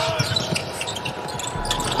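A basketball being dribbled on a hardwood court during live play, with the thin game noise of a near-empty arena.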